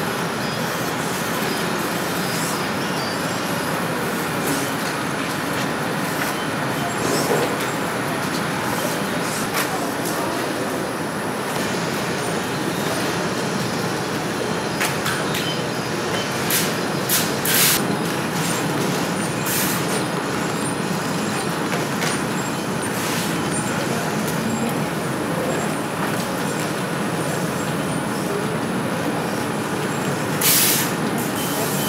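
Steady rushing background noise of a factory assembly hall, with a few brief sharp clicks around the middle.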